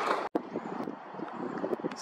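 Outdoor background noise with wind on the microphone. The sound cuts out for an instant just after the start, then goes on as a fainter, even rush.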